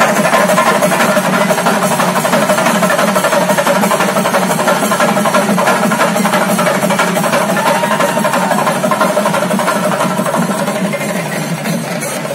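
Chenda drums beaten in a fast, unbroken roll, loud and dense, with a held higher tone running over it.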